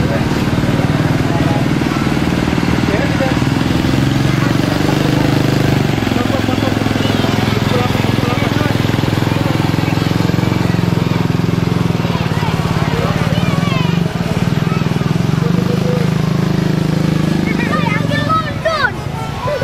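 Crowd voices over the steady running of a motorized parade float's engine.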